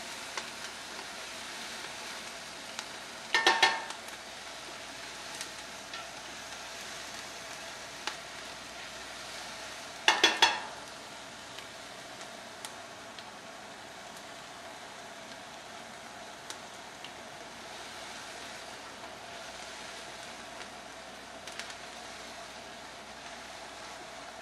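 Diced onions sautéing in canola oil in a hot stainless-steel stock pot: a steady sizzle, with the utensil stirring them now and then. Two short knocks against the pot ring out, about three and a half seconds and ten seconds in.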